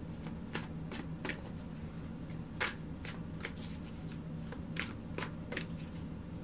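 A deck of tarot cards being shuffled by hand: irregular light clicks of cards sliding and tapping, a few per second, with one louder one about two and a half seconds in, over a steady low hum.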